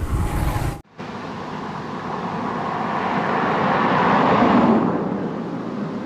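Rushing noise of a road vehicle passing on the bridge roadway, swelling to a peak about four seconds in and then fading.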